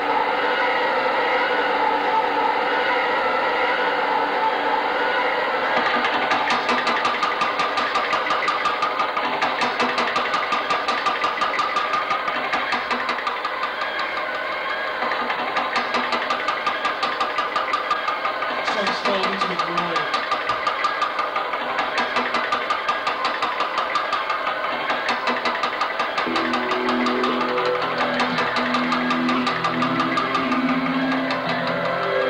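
Live electronic band music built on sequences and samples: layered sustained tones, then a fast even pulse from about six seconds in. A low melodic line of separate notes enters near the end.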